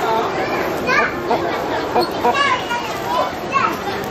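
Several children talking and calling out at once, overlapping high-pitched voices.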